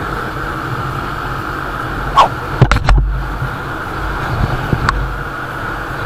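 Motor scooter riding at speed: steady wind rush over the microphone with engine and road rumble underneath, broken by a few sharp knocks and a low thump about halfway through.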